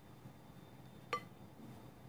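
A single short, ringing clink about a second in as a plastic spatula knocks against a glass mixing bowl while stirring stiff cookie dough.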